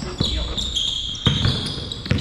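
A basketball bouncing on a hardwood gym floor, two sharp thuds about a second apart, with sneakers squeaking on the floor.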